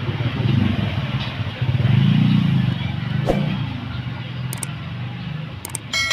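A motorcycle engine running nearby, its pulsing rumble swelling about two seconds in, with a few light metallic clicks from tools and parts being handled.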